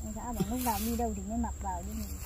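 A person's voice murmuring softly in one drawn-out, wavering sound, much quieter than the talk around it, over a steady thin high-pitched tone.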